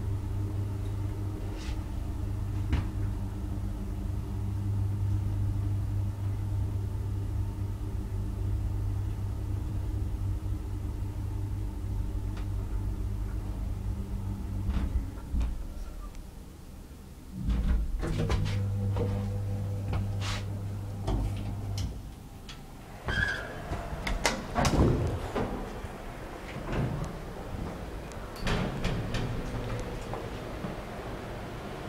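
Traction elevator car running with a steady low hum as it travels, dying away about halfway through. A thud, another stretch of hum, then a string of clicks and clunks from the doors during the last several seconds.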